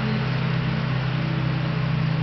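A machine running steadily: a low, even hum with a hiss over it, unchanged throughout.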